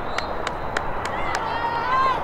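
Lacrosse players calling out on the field: a long high-pitched call starting about a second in, over scattered sharp clicks and steady outdoor background noise.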